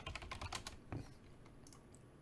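Typing on a computer keyboard: a quick run of keystrokes through the first second, thinning to a few scattered clicks.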